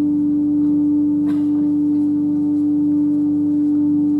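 Church organ holding one long sustained chord, steady in loudness, with a soft click about a second in.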